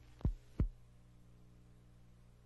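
Two short, low thumps, about a third of a second apart, each falling quickly in pitch, over a faint steady low hum.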